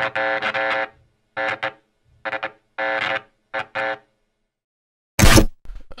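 Short electronic music sting with a glitch effect: a held synth chord chopped into five or six short stuttering bursts with gaps between them, then a brief burst of noise about five seconds in.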